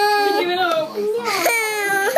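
Toddler crying: a long held wail breaks off about half a second in, followed by broken, wavering sobs and another drawn-out wail near the end.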